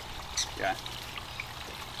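Steady splashing of water running down a small backyard pond waterfall, with one short word spoken over it.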